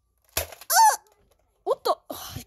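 A toy foam-dart blaster fires with a single sharp snap about a third of a second in, followed by three short high-pitched vocal cries, each falling in pitch, the last two in quick succession.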